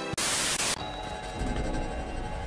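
A loud burst of TV-static white noise lasting about half a second and cutting off abruptly, used as an editing transition. After it, low, dark background music plays.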